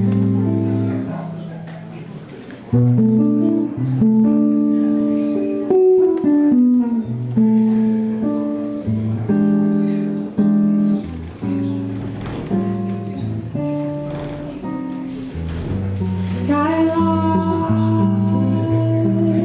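Hollow-body electric jazz guitar playing a solo introduction of held chords and short melodic lines. Near the end a woman's voice comes in singing over it.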